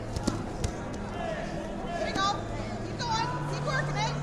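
Voices shouting across a large hall over a steady low hum, with a few sharp knocks in the first second.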